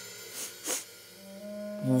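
Soft held notes of background music, with two quick sniffs about half a second in.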